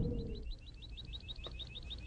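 A bird's fast trill: a run of short, high chirps, about nine a second, fairly faint. A held low music note dies away in the first half second.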